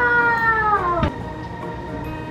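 A drawn-out "wooow" exclamation, the voice sliding slowly down in pitch for about a second and a half before breaking off about a second in.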